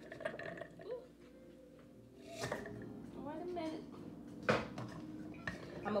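Kitchenware handled on a countertop, with two sharp knocks, about two and a half seconds in and again near four and a half seconds.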